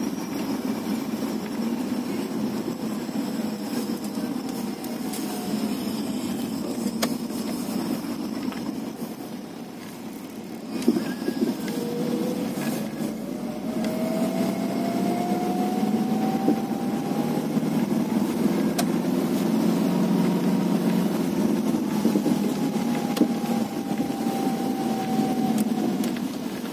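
A car driving, heard from inside the cabin: steady engine and road noise. A faint whine rises in pitch about halfway through and slowly falls again near the end, with a single sharp knock about eleven seconds in.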